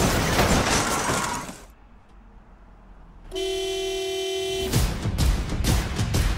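Trailer sound mix: a crash under music fades away, and after a short lull a single steady horn blast sounds for about a second and a half. Loud music with a strong, regular beat then starts.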